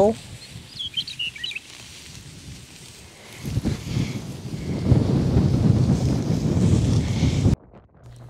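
A few short bird chirps about a second in over quiet open-air background. From about halfway a loud, low rushing rumble takes over and cuts off suddenly just before the end.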